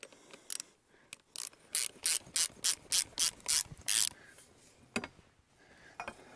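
Ratchet spanner clicking in a quick, even run of about ten strokes, about three a second, as a nut is tightened down on a coach bolt through a wooden post; the clicking stops about two-thirds of the way in, with one last click after it.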